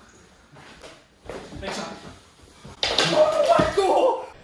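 Mini hockey sticks and ball knocking and scraping on a wooden floor in a few short sharp hits. About three seconds in, loud wordless yelling starts over the scuffle.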